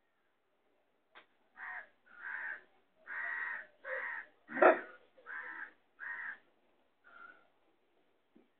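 A series of about eight harsh animal calls in a steady rhythm, one every half second or so, the loudest about halfway through.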